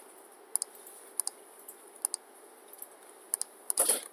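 Scattered clicks of a computer keyboard and mouse, single clicks and pairs spread out, with a quicker run of clicks near the end.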